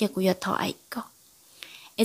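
Speech: a voice narrating in Hmong that breaks off about a second in for a short pause.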